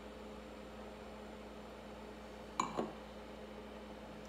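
Quiet room tone with a steady low hum. A little past halfway there is one brief, short sound.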